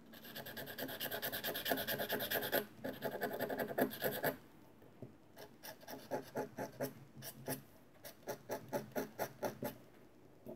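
A fine pointed tool scratching across watercolour paper. There is a burst of rapid strokes for about four seconds, a short pause, then separate strokes about four a second.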